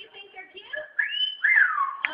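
A talking bird whistling two notes about a second in: the first rises and holds briefly, the second falls away, in the pattern of a wolf whistle.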